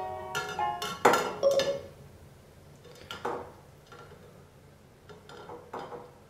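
A phone knocking and clinking against the inside of a tall glass vase full of water as it is lowered in: several sharp knocks, the loudest about a second in, then a few lighter taps spread out through the rest.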